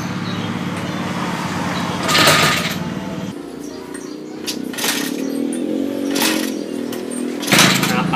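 Small off-road motorbike's engine running, then cutting out about three seconds in. A few sharp kick-start strokes follow, and the engine runs again near the end: the bike is playing up.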